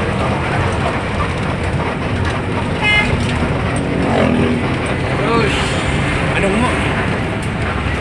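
Steady engine and road noise heard inside a moving intercity bus, with one short horn toot about three seconds in.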